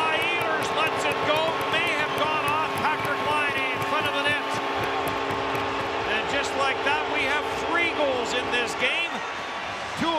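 Winnipeg Jets arena goal horn sounding steadily over a cheering, clapping crowd after a home goal; the horn stops about a second before the end.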